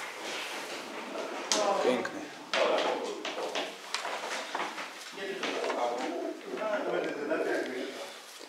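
Racing pigeons cooing in the background under men's talk.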